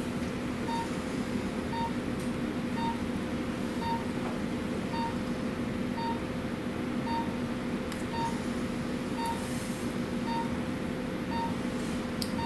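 Operating-theatre patient monitor beeping about once a second, the pulse-oximeter tone marking each heartbeat, over a steady equipment hum.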